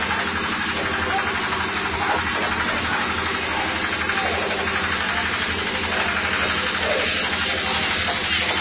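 An engine running steadily at an even pitch, with faint voices over it.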